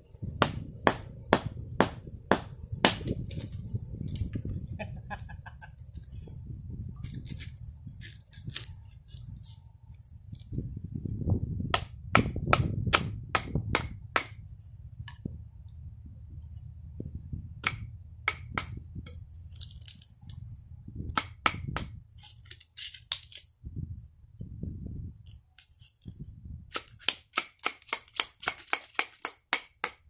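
A wooden stick knocking repeatedly on the back of a knife blade to split a dry palm branch: sharp cracking strikes in irregular bursts, with a quick run of strikes near the end. A low rumble of wind on the microphone runs underneath.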